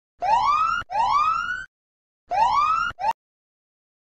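Electronic whooping alarm sound effect: two quick rising whoops, a short pause, then another whoop and a fragment that cuts off abruptly. It signals time up as the countdown timer hits zero.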